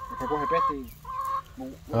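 Backyard poultry calling: one held call about half a second long at the start, then a shorter one a little after a second in.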